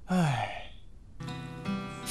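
A man's short, breathy sigh, falling in pitch. About a second later soft background music with held guitar notes comes in.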